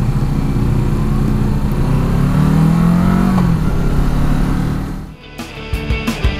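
Kawasaki Versys 650 parallel-twin motorcycle engine accelerating hard from a stop, its pitch climbing for about three seconds, then dropping at a gear change and climbing again. About five seconds in the engine sound cuts off and electronic rock music takes over.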